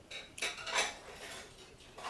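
A short run of sharp clinks and rattles, like light objects knocked together, loudest just under a second in and dying away by about a second and a half.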